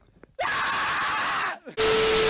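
A person screaming loudly for a little over a second. A burst of TV static follows with a steady test-tone beep, then both cut off abruptly.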